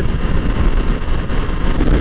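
Steady wind rushing over the microphone at highway speed, with the running of a 2006 Kawasaki Ninja 250R's parallel-twin engine and road noise underneath.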